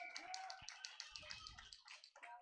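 Near silence on the commentary microphone: faint, quick, regular tapping with faint distant voices underneath.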